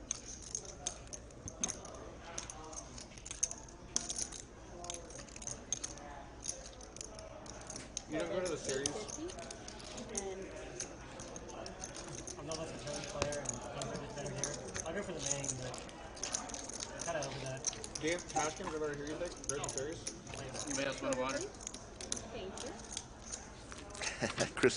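Poker chips clicking and clacking in quick, irregular runs as players riffle and stack them at the table. Low murmured table talk joins underneath about a third of the way in.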